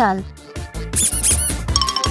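Background music with a quick run of high-pitched squeaks about a second in, a cartoon-style comedy sound effect.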